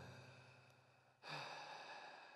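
A person's voice, faint: a low, held 'ahm' tone fading away, then a little over a second in a breathy sigh that trails off slowly.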